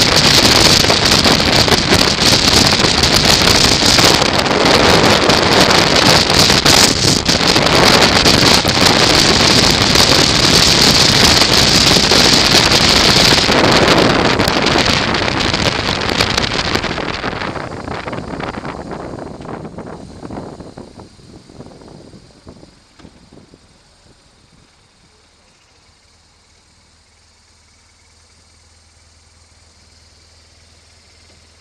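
Loud wind noise on a helmet camera's microphone with road noise from a BMW R1200RT-P motorcycle at dual-carriageway speed. It fades away over about ten seconds as the bike slows and stops, leaving only a faint low hum near the end.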